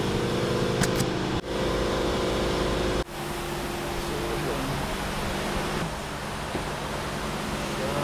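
A steady mechanical hum with a low drone, louder for the first three seconds and dropping off abruptly twice, then continuing more quietly. Two brief high clicks sound about a second in.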